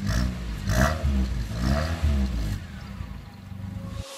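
Car engine blipped three times through an exhaust pipe fitted with a clip-on turbo-sound whistle, the revs rising and falling, with a hissing whoosh on the first two. It then drops back to a quieter idle.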